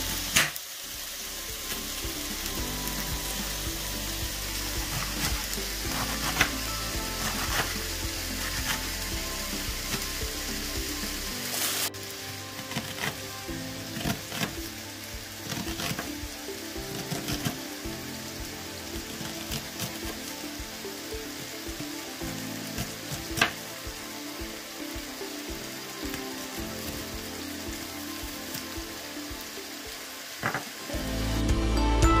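Chicken and sliced peppers frying in a pan, a steady sizzle, with a few sharp knife taps as a lettuce and an onion are sliced on the worktop.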